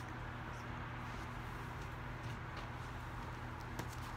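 Quiet room tone with a steady low hum, and a few faint light clicks from tarot cards being handled, the sharpest near the end.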